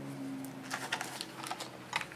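A scatter of light, quick taps and clicks from about a second in, from hands pressing hot-glued elastic down onto denim and handling a hot glue gun on a table. A faint low hum fades out at the start.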